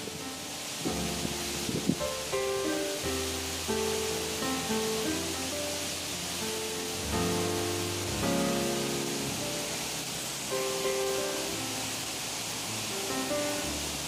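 Background music of slow held notes over a low bass line, laid over the steady rush of a waterfall plunging into a pool.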